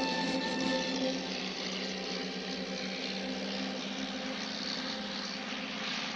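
Propeller airplane engine droning steadily in flight. The tail of orchestral music fades out about a second in.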